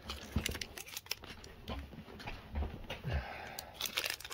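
Foil booster-pack wrapper crinkling and tearing as it is opened by hand: a run of small crackles with a few soft low bumps from handling.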